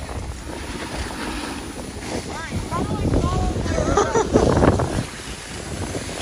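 Wind rushing over the microphone and skis sliding on packed snow on a downhill ski run, with voices calling out briefly in the middle.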